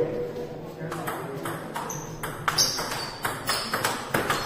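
Table tennis rally: a celluloid-type ball clicking off the rubber-faced paddles and the table top in quick alternation, several light knocks a second, with the echo of a large hall.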